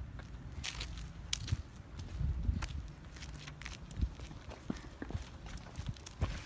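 Footsteps on a concrete driveway: irregular scuffs and knocks over a low rumble on the microphone.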